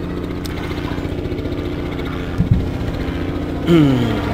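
A steady, low mechanical hum at an even pitch, like an engine idling. A short low thump comes about two and a half seconds in.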